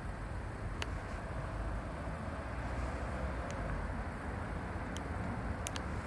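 Steady outdoor background rumble with a few faint clicks from the e-bike's handlebar control-pad button being pressed to power on the Bafang display.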